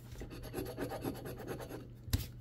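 Faint rubbing and scraping of paper lottery tickets handled on a tabletop, a run of small irregular scratches over a low steady hum.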